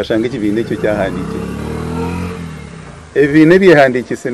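A passing motor vehicle's engine, swelling and then fading over about two seconds, with a man's speech before and after it.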